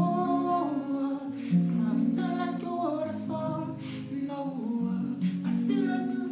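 Acoustic guitar strummed in chords under a man's voice singing a wordless melody line.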